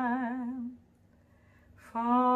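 A woman singing unaccompanied: she holds the closing note of a line with a wavering vibrato that dies away under a second in, then after a short pause takes a breath and starts the next line near the end.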